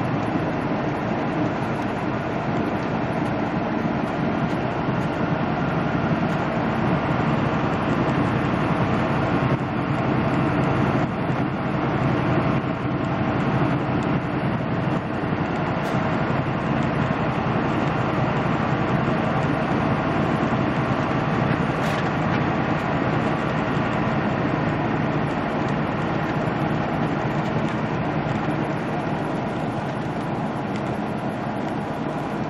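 Steady in-cab drone of a semi truck cruising at highway speed: the diesel engine's low hum mixed with tyre and wind noise.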